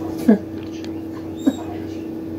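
Two short, high yelps, each sliding down in pitch, about a second apart, over a steady hum.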